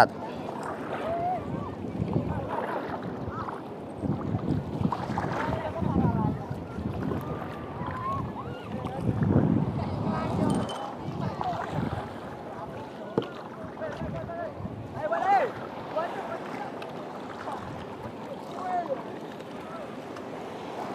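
Water sloshing and splashing around a small paddled boat moving through small waves, the noise swelling irregularly every few seconds, with wind on the microphone.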